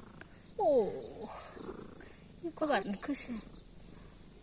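Orange tabby cat purring softly while being scratched on the head and under the chin, with a woman's drawn-out "oh" falling in pitch about half a second in.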